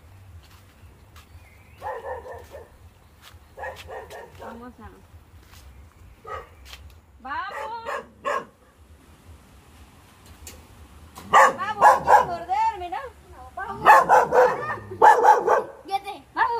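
A dog barking in short bouts, with louder, busier calling and voices in the last few seconds.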